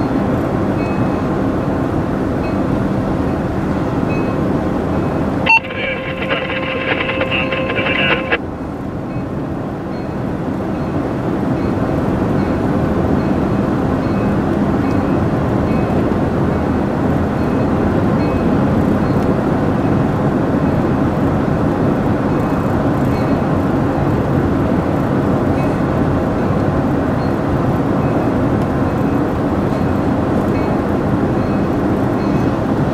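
Steady road and running noise heard from inside a moving car pacing a freight train led by an EMD SD40-2 diesel locomotive. About five seconds in, a chord of several steady tones sounds for about three seconds and stops abruptly.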